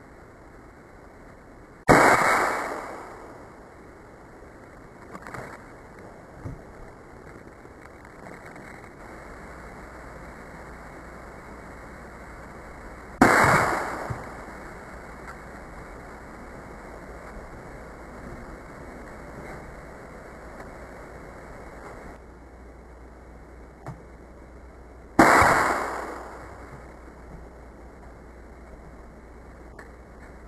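Three shots from a .22 pellet gun at beer cans, each a sharp crack with a fading tail about a second long, spaced about eleven to twelve seconds apart.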